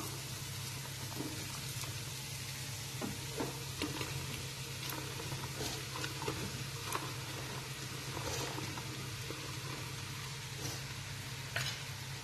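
Onions frying in oil in a non-stick pan, a steady sizzle, with a few faint light knocks as chunks of sponge gourd are dropped in.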